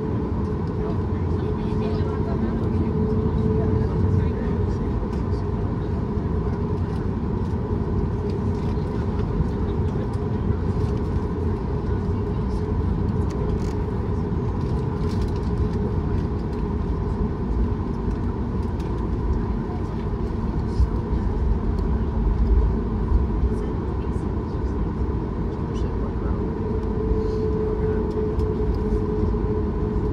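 Cabin sound of a Boeing 737 MAX 8 on the ground, its CFM LEAP-1B engines running at low taxi power: a steady hum with a couple of engine tones over a low rumble, with a few small bumps near the end.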